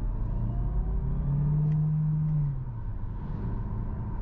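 Cabin noise of a Hyundai Tucson Plug-in Hybrid on the move: steady low road and drivetrain rumble. A low hum rises slightly about a second in and fades out about halfway through.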